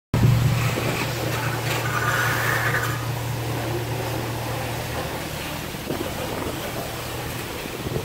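A motor vehicle engine running with a steady low hum that weakens after about five seconds.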